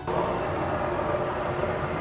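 Handheld immersion blender running steadily in a stainless steel bowl, mixing lye solution and melted oils into emulsifying soap batter. The sound starts suddenly.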